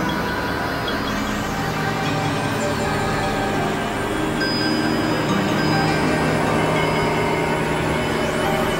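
Experimental electronic drone music: layered synthesizer tones held steady over a noisy haze, with a thin high tone sustained for about two seconds midway.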